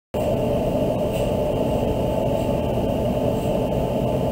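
Steady room noise: a low, even rumble and hiss with a faint steady high hum, and no distinct knocks.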